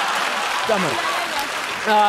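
Studio audience applauding, with men's voices speaking briefly over the clapping.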